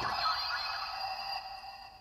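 Electronic sound effect from the Engine-Oh G12 toy robot's Engine Soul slot, set off by the launch button as the lid closes on an inserted Engine Soul: a held electronic tone, several pitches together, that slowly fades.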